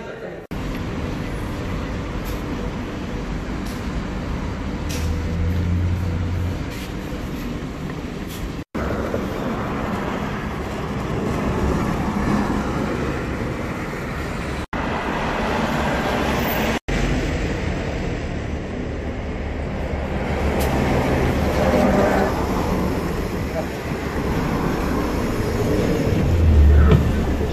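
Road traffic noise from passing cars, in short edited clips, with people's voices in the background and a bus engine running at the end as the bus is boarded.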